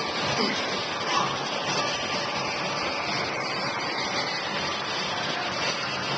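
Steady, noisy gym background with faint, distant voices.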